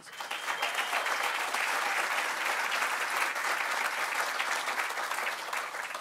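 An audience applauding, starting suddenly and holding steady before easing off slightly near the end.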